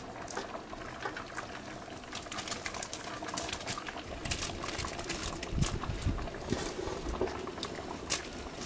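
Large pot of fish head soup boiling and bubbling over a wood fire, with many small scattered crackles and pops.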